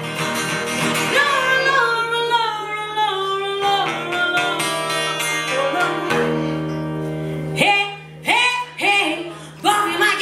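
A woman singing long, sliding notes over guitar accompaniment, breaking into short, separate phrases in the last two seconds.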